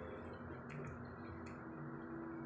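Faint eating sounds: a couple of soft mouth clicks while chewing a bite of steamed rice cake, over a low steady hum.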